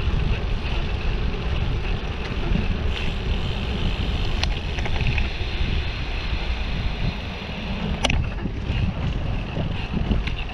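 Wind noise on the microphone of a camera riding on a moving bicycle, a steady low rumble, with two sharp clicks, one about halfway and one near the end.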